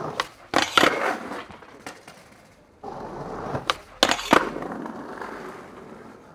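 Skateboard wheels rolling over hard ground, broken by sharp board clacks from tricks: a pair about half a second in and another pair about four seconds in, each followed by rolling away.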